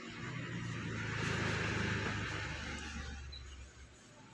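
A motor vehicle passing by, its low engine hum and road noise swelling to a peak about halfway through and then fading away.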